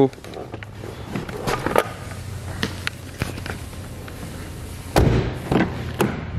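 Car's rear passenger door being opened: a heavy thud about five seconds in, with a smaller knock just after it and a few light clicks earlier, over a low steady hum.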